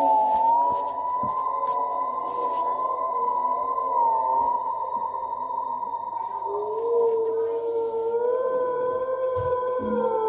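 Eerie horror-style drone of several sustained, slowly wavering tones, like a siren or theremin. A lower tone joins about six and a half seconds in, and a higher one near the end.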